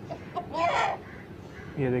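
Aseel hen held in the hand giving a short, harsh squawk about half a second in, after a couple of soft clucking notes.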